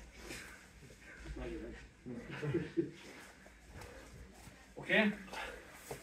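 Mostly quiet speech in a small room, with a low rumble under it; a man says "okay" near the end.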